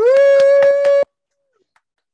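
A person's loud 'woo!' cheer: one held note of about a second that rises briefly at the start, stays steady, then cuts off sharply.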